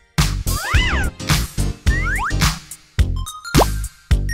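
Upbeat background music with a steady beat, overlaid with sliding tones that rise and fall like cartoon boings.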